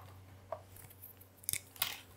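Faint desk handling noises, most likely pens and paper being handled: a few short clicks and scrapes, the loudest two close together about a second and a half in, over a low steady hum.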